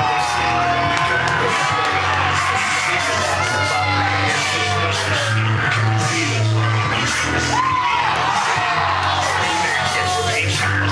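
Loud music with deep held bass notes, and a crowd yelling and whooping over it throughout, hyping up a krump dancer.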